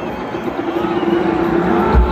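Live band music from a large outdoor PA system, heard from within the crowd over crowd noise, with sustained held notes and a heavy bass thump near the end.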